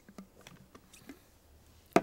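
A few light clicks and taps of a plastic blender jar and lid being handled as the lid is worked off, with a sharper click near the end.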